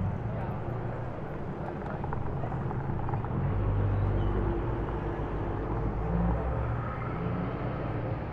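Low, steady engine and tyre rumble of a Bentley Bentayga SUV moving off slowly in city traffic, swelling slightly about four seconds in.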